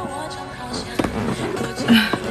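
Background music with steady held notes, broken by a few sharp pops about a second in and again near the end.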